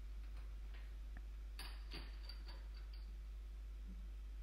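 A few faint, short clicks and light handling sounds as a metal fid and splicing spike are moved about on a tabletop beside braided rope, over a steady low hum.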